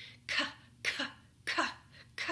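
A woman voicing a short, sharp "k" consonant sound three times, about two a second, imitating a baby practising her consonants.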